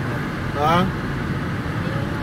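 Steady road and engine noise inside a moving car's cabin. About half a second in, a brief voice sound rises quickly in pitch.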